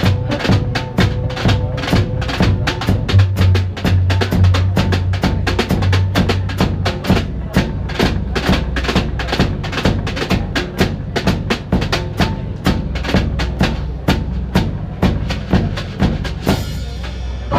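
Small live acoustic band playing an instrumental passage: a steady drum-kit beat over a double bass line and acoustic guitar, with one long held note in the first few seconds.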